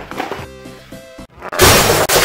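Background music with held notes, then a sudden loud crash about one and a half seconds in that drowns it out.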